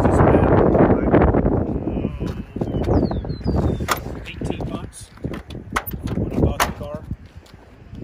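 Wind buffeting the microphone, then several sharp clicks, the loudest near the middle and towards the end, as the car door's handle and latch are worked.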